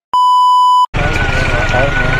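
Steady high test-tone beep, the kind played over television colour bars, used as an editing transition. It lasts just under a second, with a brief dead-silent gap either side.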